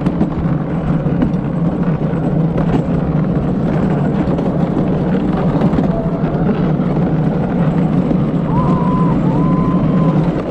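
Gravity luge cart rolling fast down a concrete track, its wheels giving a steady, loud rumble with wind on the microphone. Two brief, faint high tones come near the end.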